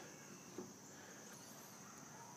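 Near silence with one faint click about half a second in, as the motorcycle's fuel-tank filler cap is flipped open.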